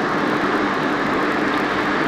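Steady background noise with an even hiss and a faint low hum, no distinct events and no speech.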